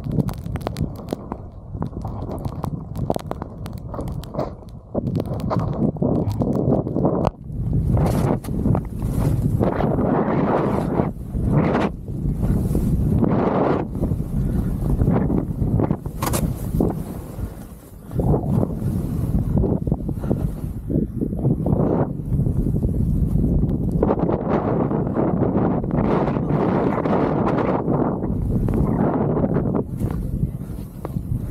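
Wind rushing over the camera microphone while skiing downhill through fresh snow, with the skis hissing on the snow. It gets louder about a quarter of the way in and eases off briefly a little past the middle.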